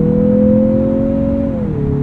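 Turbocharged 2.5-litre inline-four of a Mazda CX-50 pulling under acceleration, heard from inside the cabin. Its note climbs steadily, then drops quickly about a second and a half in as the six-speed automatic shifts up.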